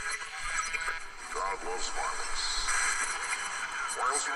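Quiet recorded music with an indistinct voice in it: the opening of a death metal track played back from the computer.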